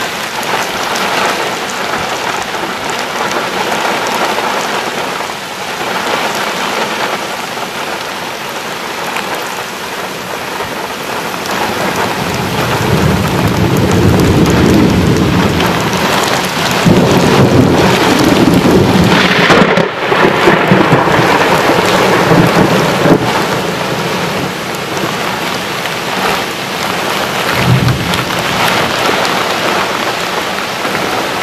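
Heavy rain from a severe thunderstorm pouring steadily, with a long rumble of thunder that builds from a little under halfway through, is loudest around two-thirds in, then eases.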